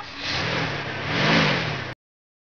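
Cartoon car sound effect: engine noise of a car driving up, swelling to its loudest about a second and a half in with a slight rise and fall in pitch, then cutting off suddenly near the end.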